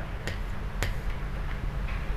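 Three faint, sharp clicks over a steady low hum in a pause between speech.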